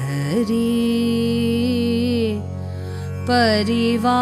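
A voice singing a Sanskrit devotional hymn in Carnatic style over a steady drone. About half a second in, the voice slides up onto one long held note. Near two and a half seconds it breaks off, leaving only the drone, and the next sung phrase begins shortly after.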